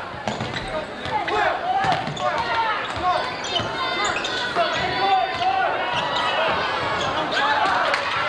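A basketball bouncing on a hardwood gym floor during play, with spectators' voices and shouts throughout.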